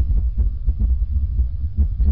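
A deep, continuous rumble with irregular dull thuds, on a low-fidelity old recording.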